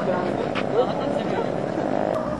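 Steady drone of a motor vehicle's engine with people's voices over it.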